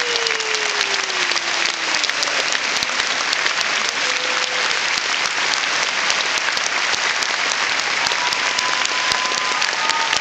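Audience applauding steadily, a dense even clatter of many hands clapping, with a few faint cheers.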